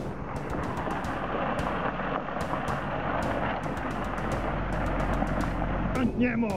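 Car driving on a gravel road: steady tyre and road noise over a low, constant engine drone, with scattered sharp ticks of loose stones.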